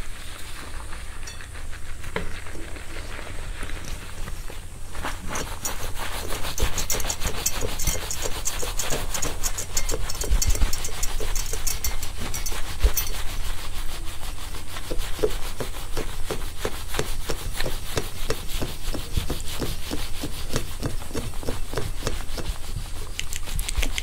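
Close-miked rubbing and scratching of wig hair under fingers and a wire scalp massager's tines: a dense crackle of quick strokes that grows busier about five seconds in.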